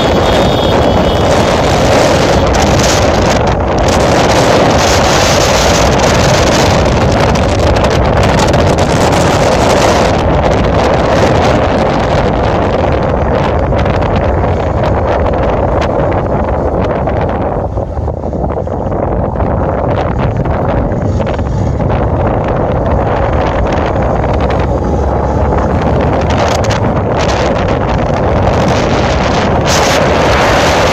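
Loud, continuous wind buffeting the microphone of a moving camera in strong storm wind. It eases briefly about eighteen seconds in, then picks up again.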